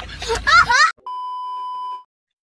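A high, rising and falling voice, then a single steady electronic beep held for about a second, cut off abruptly at the end.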